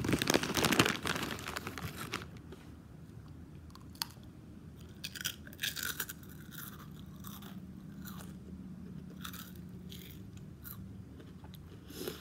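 A person eating close to the microphone: loud crunching and crackling over the first two seconds, then quieter chewing with scattered mouth clicks.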